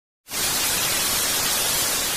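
TV static sound effect: a steady hiss of white noise that starts about a quarter second in.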